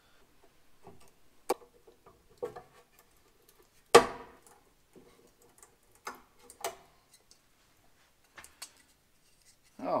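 Scattered clicks and taps of hand tools working a stripped screw in a plastic van side-mirror mount, with one sharp, loud crack about four seconds in.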